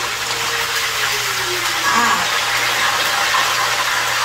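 Fish frying in hot oil in a pan: a steady sizzle.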